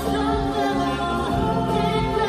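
Singing from a live stage musical, voices sustaining and gliding in pitch over backing music.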